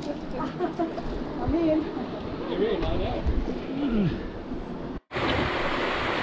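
Distant, indistinct voices of people calling out across a rocky gorge over an open outdoor background. About five seconds in the sound cuts abruptly to a steady rushing noise.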